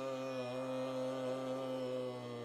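Background music on the taus, a bowed Sikh string instrument, holding one long steady note over a low drone.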